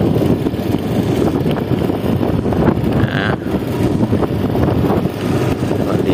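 Steady, loud rumble of wind buffeting the microphone outdoors, with no clear engine tone.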